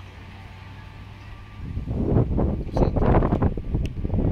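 Wind buffeting the microphone in loud, irregular gusts that start about two seconds in, after a fairly quiet start.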